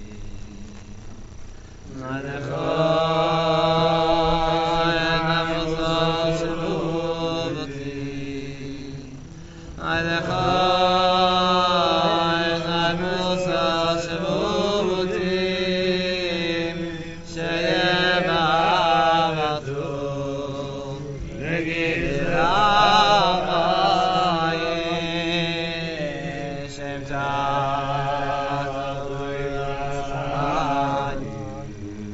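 Men's voices singing a slow, wordless melody, a niggun, in long drawn-out phrases with short pauses between them.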